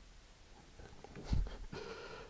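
Hand-handling noise on a cutting mat while working a small rubber-glove canister and a cardboard rocket tube: a soft thump a little past halfway, then light handling sounds and a short non-speech vocal sound near the end.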